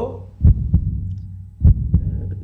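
Heartbeat sound effect: two double 'lub-dub' thumps, about a second apart, over a low steady hum.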